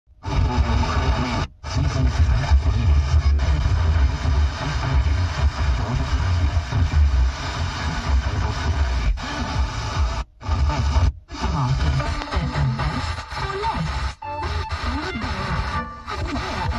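Car FM radio on 89.7 MHz playing Bay Radio's bass-heavy music, a distant station received by tropospheric ducting. The audio cuts out completely for a moment about a second and a half in, twice around ten to eleven seconds, and again near fourteen seconds, as the weak long-distance signal drops out.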